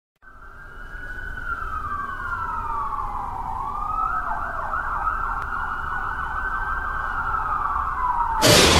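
Emergency-vehicle siren fading in, with a slow falling wail that switches to a fast yelp about four seconds in, over a low rumble.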